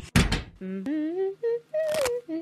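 A door thunks, then a voice hums a short tune of sliding, rising notes, with another soft knock near the end.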